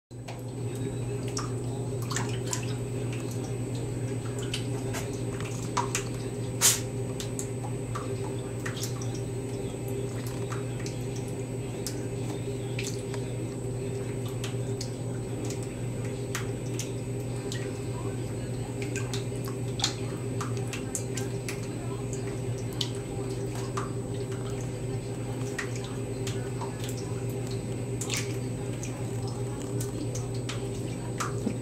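A cat pawing and splashing in shallow bathwater: scattered light splashes, drips and taps, one sharper tap partway through, over a steady low hum.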